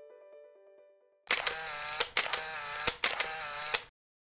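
Background music fading out, then, after a brief silence, a camera shutter and motor-drive sound: a whirring wind broken by several sharp clicks for about two and a half seconds, cutting off abruptly just before the end.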